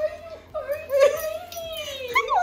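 Dog whining during a greeting, a high wavering whine that rises to a peak about a second in.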